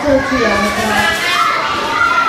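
Several young children's voices at once, talking or calling out over one another, with some words drawn out.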